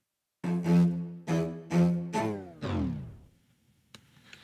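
Staccato bowed-string loop playing back with a tape stop slow-down effect on its ending: a run of short, detached notes, then the last notes sag downward in pitch and slow to a stop, fading out a little after three seconds in.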